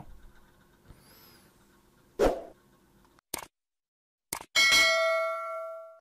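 A thump a couple of seconds in and a few short clicks, then, about four and a half seconds in, a loud bell-like chime is struck and rings with several steady tones, fading away.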